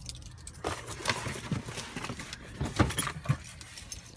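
Scattered knocks, clicks and rustling of things being handled and moved about inside a pickup truck cab, with the sharpest knock near three seconds in.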